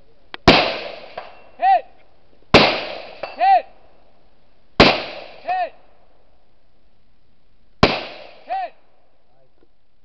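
Four rifle shots fired from prone, spaced about two to three seconds apart, each followed about a second later by the faint ring of a distant steel target being hit.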